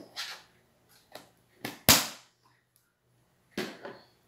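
Hard plastic Tupperware containers knocking and clattering as they are handled and set down: a handful of short, sharp knocks, the loudest about two seconds in.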